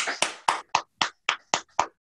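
Hands clapping, about four claps a second, heard over a video call: each clap is cut off sharply, with silence between.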